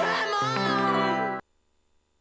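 TV show jingle: music on held chords with gliding, wavering notes over them, stopping abruptly about one and a half seconds in.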